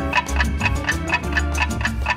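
Background music with a clock-ticking sound effect, about five quick even ticks a second over a steady bass line, used to show time passing.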